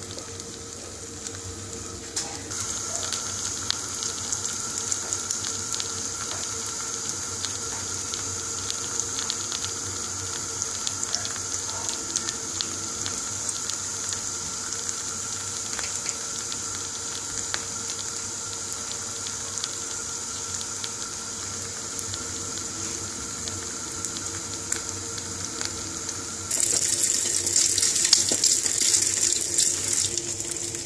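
Egg-dipped slice of bread shallow-frying in hot oil in a pan: a steady sizzle with fine crackling, turning louder and harsher for the last few seconds.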